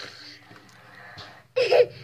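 A young girl's breathy exhale through pursed lips, then a short, loud burst of her voice about a second and a half in.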